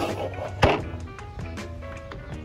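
Background music, with one loud thunk a little over half a second in: the black plastic base of a life-size animatronic prop knocking on wooden deck boards.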